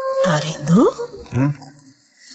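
A steady electronic tone cuts off just after the start, then a voice speaks briefly with a sharply rising pitch in the middle.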